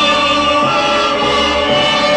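Stage-musical chorus holding one long sung note on the word "groom" over orchestral accompaniment, ending a line of a comic wedding song.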